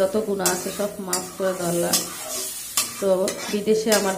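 Metal spatula stirring a thick curry in an aluminium kadai, with repeated sharp scrapes and knocks against the pan over a light sizzle from the sauce.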